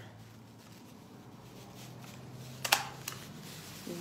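Thin plastic trash bag liner rustling faintly as it is handled, then a stapler clacking once sharply near the end, with a smaller click just after.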